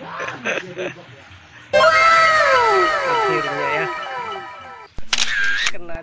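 An edited-in sound effect: a run of overlapping pitched tones, each falling in pitch, that starts and stops abruptly. A short, loud burst with a dipping then rising tone follows it near the end.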